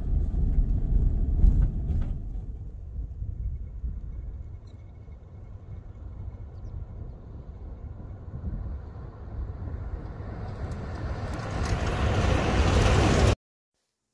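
Road noise inside a vehicle for the first couple of seconds. Then a tow truck pulling the old 1952 Diamond T wrecker along a gravel road, its engine and tyre noise faint at first and growing steadily louder as they approach, until the sound cuts off abruptly shortly before the end.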